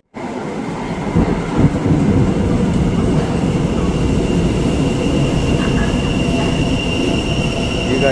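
A Tyne and Wear Metro train pulls into an underground station platform. A loud, steady rumble of the train running in swells about a second in, joined by a thin, high, steady whine from about two seconds in.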